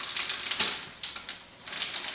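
Plastic bag crinkling and crackling as it is handled and shaken over a blender. The crackle is busy at first, thins out about a second in, and picks up again near the end.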